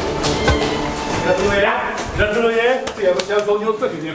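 Men's voices talking in a room, with a few sharp knocks. Music with a deep bass line cuts off about half a second in.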